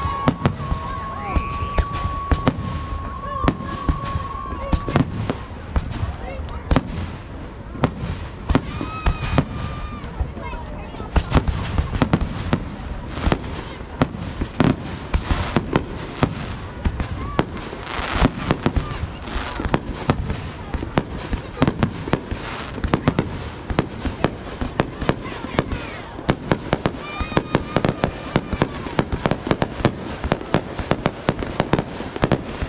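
Aerial fireworks shells bursting in a dense, continuous barrage, several bangs a second with crackling between them. A steady high whistle runs over the first five seconds.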